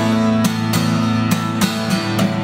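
Acoustic guitar strumming sustained chords in an instrumental gap between sung lines, about five strokes.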